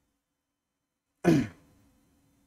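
Near silence, then a man clears his throat once, briefly, a little over a second in.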